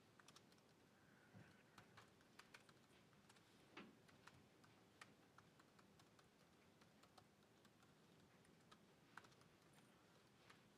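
Faint, irregular clicking of laptop keys being typed on.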